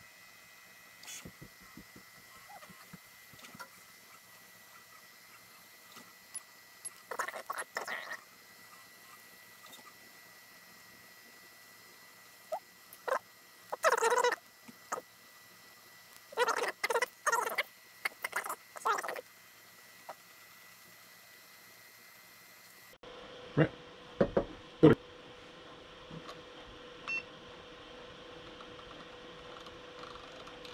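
Prusa Mini 3D printer's stepper motors chirping and whirring in short bursts as the print head and bed move during a test print. A few sharp clicks come near the end.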